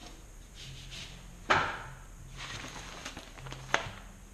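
Paper transfer sheet of a vinyl decal rustling as it is handled and pressed by hand against a sheetrock wall. There is a loud sudden rustle about a second and a half in and a sharp click near the end.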